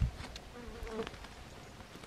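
A flying insect buzzing briefly close by, a wavering hum of about half a second starting just over half a second in. A short low rumble at the very start.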